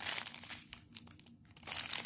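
Clear plastic zip-lock bags of diamond-painting drills crinkling as they are handled, in short irregular rustles that fade for a moment in the middle and pick up again near the end.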